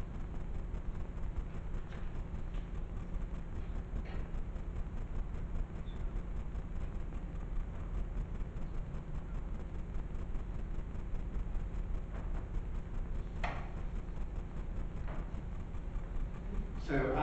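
Steady low rumble of room noise with no speech, broken by a single short click near the end.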